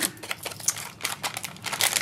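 A clear plastic bag crinkling as it is handled around a spool of gold sequin trim: a rapid, irregular run of small crackles.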